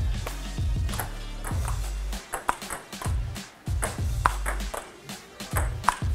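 Table tennis ball clicking off rubber paddles and bouncing on the table in a rally, several sharp irregularly spaced clicks, over background music with a steady bass line.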